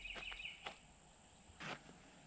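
Faint insect trill outdoors, a pulsing buzz that stops about half a second in, with a few light clicks and a short soft noise near the end.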